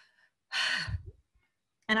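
A woman's exasperated sigh: a single breathy exhale about half a second in that sinks into a low, falling voiced tail.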